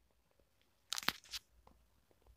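Near silence, broken about a second in by a short cluster of faint clicks and crackles.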